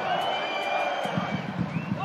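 Football stadium crowd noise, a steady hubbub from the stands, with a faint held whistle lasting about a second near the start.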